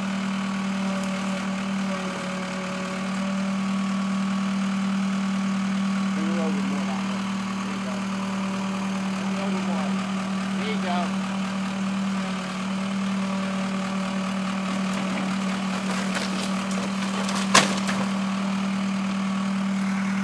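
Backhoe engine running steadily at one constant pitch, with a single sharp crack near the end as the wooden porch roof is pulled down.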